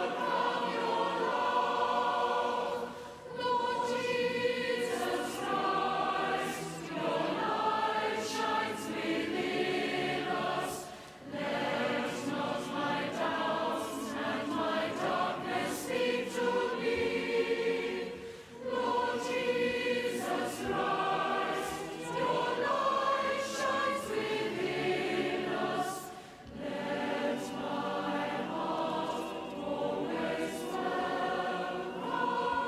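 A choir singing a hymn in long phrases, with brief pauses about every eight seconds.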